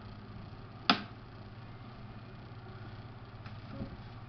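Quiet room tone with a low steady hum, broken about a second in by one short, sharp click.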